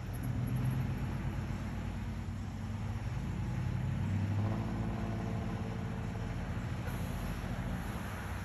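A pickup truck driving close past, loudest in the first second, then a steady low engine hum from vehicles at the crossing, with a pitched engine tone standing out from about halfway through.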